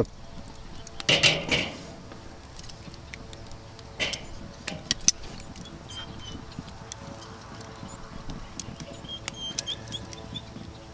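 Metal tongs clinking and scraping on a charcoal grill's steel grate as whole tomatoes and a jalapeño are set down. A longer scrape comes about a second in, followed by a few sharp clicks.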